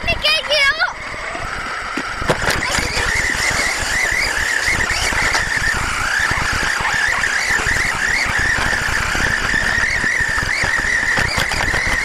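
Brushless-motored HPI Savage XS Flux RC truck driving over rough grass, heard from its onboard camera: a steady, wavering motor whine over the rumble and rattle of the chassis and tyres.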